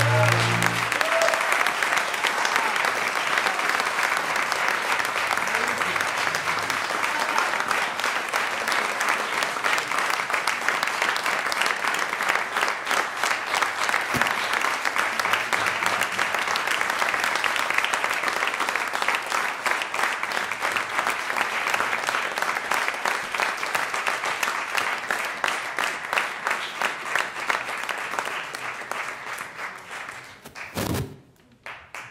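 The last notes of the orchestra die away at the start, then the audience applauds steadily, thinning and fading out near the end.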